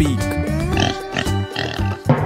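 Children's backing music with a steady beat, with a cartoon pig's oinking sound effect laid over it.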